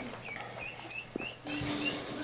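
Ducklings peeping: a run of short, high peeps, about four a second, with a single soft knock just past the middle.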